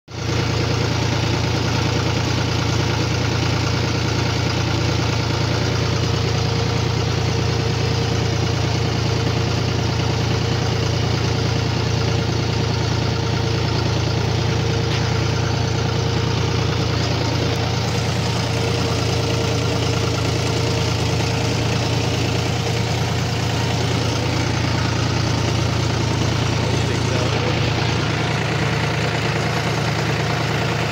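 John Deere tractor's diesel engine running steadily with a loud, even low hum while it pulls a seed drill across a field.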